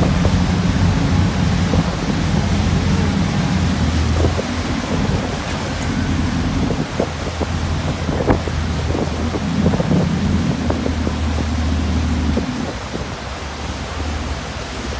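Boat running on open water: a steady low engine drone under the rush of its churning wake, with wind buffeting the microphone. The low drone drops away near the end.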